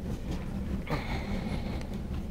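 Room noise in a meeting hall while no one speaks: a low, steady rumble with a faint hiss joining about a second in.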